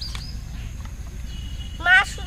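A short click as a toy vegetable is cut with a plastic toy knife, over a steady low rumble. A girl's voice starts near the end.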